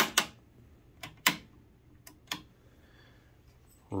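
A few short, sharp clicks: two close together at the start, two more about a second in, and a fainter one a little after two seconds.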